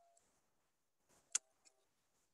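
Near silence broken by one sharp click about a second and a half in, followed by a fainter tick: a computer click advancing the presentation slide.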